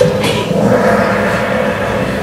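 Quiz game's time-up sound from the projector's speakers: a sharp hit at the start, then a ringing gong-like tone that holds and slowly fades as the question closes and the answer results come up.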